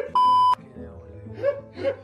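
A loud, high, single-pitched censor bleep of about half a second near the start, dubbed over a swear word, with background music running under it and short vocal exclamations later.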